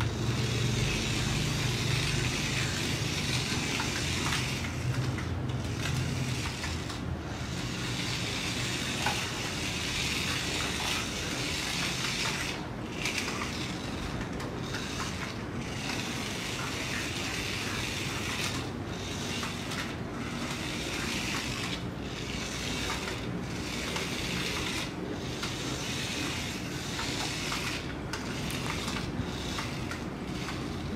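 Tiny 1:64-scale remote-control toy car's electric motor and gears whirring in short runs as it is driven about, stopping and starting again many times.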